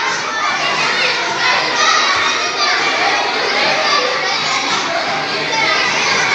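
Hubbub of many children talking and calling out at once, a steady crowd of overlapping young voices with no single voice standing out.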